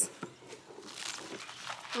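Loose compost being scraped and scooped into a black plastic tree pot laid on its side: a soft, grainy rustle that builds about a second in, with a light knock near the start.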